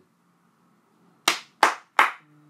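One person slowly clapping their hands three times, starting a little over a second in, the claps about a third of a second apart.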